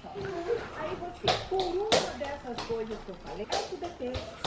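A toddler babbling wordlessly in a high voice, with a few sharp knocks in between.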